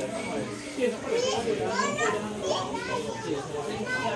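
Children's voices chattering and calling out over other people talking, with several high, rising calls.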